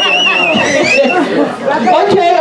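Several people talking over one another, with a high held tone that wavers and dies away about a second in.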